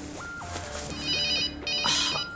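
Mobile phone ringtone: a short melody of plain electronic notes jumping up and down in pitch, with a fast warbling high tone joining about halfway through, and the phrase starting over near the end.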